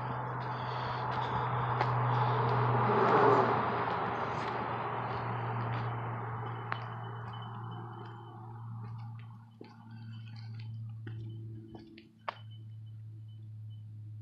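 A vehicle going past: a rushing noise swells over the first three seconds, then fades away over the next several. A steady low hum runs underneath.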